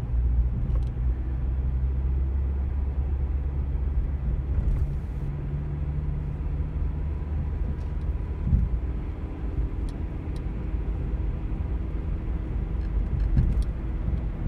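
Car road noise and engine hum heard from inside the cabin while driving, with a low thump a little past halfway and a smaller one near the end.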